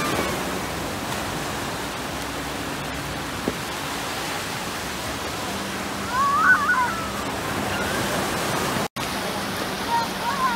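Steady rush of small surf waves washing over the shallows of a sandy beach, with a child's brief high voice about six seconds in.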